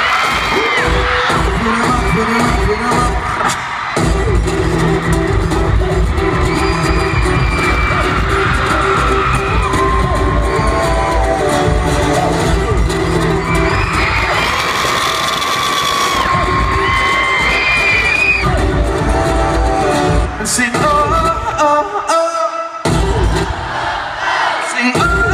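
Loud live concert music through an arena sound system: a pounding bass beat kicks in about four seconds in under long held notes, and the bass drops out briefly near the end.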